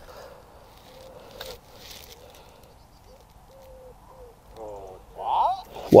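Faint, low bird calls, a few short notes of steady pitch in a row, over a quiet open-air background; a man's voice comes in near the end.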